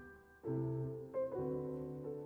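Solo piano in a classical piano concerto recording. A note dies away, then about half a second in a chord with a low bass note is struck, followed by a short higher note and another chord just past a second in.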